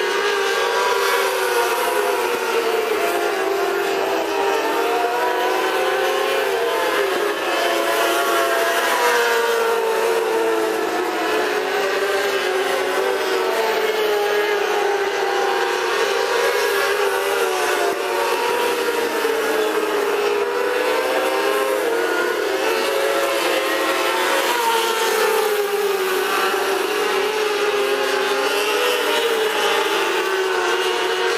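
A field of mini sprint cars racing on a dirt oval: several engines running at high revs at once, overlapping, their pitch rising and falling in waves every few seconds as they circle the track, heard from the grandstand.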